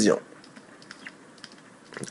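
A few faint, irregular clicks and taps of a stylus writing on a graphics tablet.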